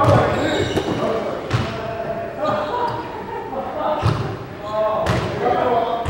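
A few sharp, irregularly spaced knocks of a squash ball against the court floor or walls, echoing in the enclosed court, with indistinct voices in the background.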